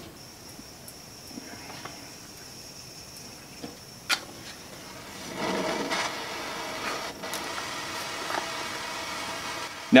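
A sharp click about four seconds in, then a propane torch flame burning with a steady hiss from about five seconds on.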